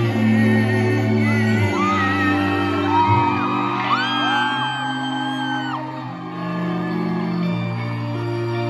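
Live band music in a large hall: held bass notes under guitar and keyboard, with high whooping voices gliding up and down through the middle, then fading.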